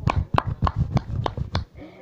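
A quick, uneven series of sharp taps or knocks, about five a second, over a low rumble, dying away near the end.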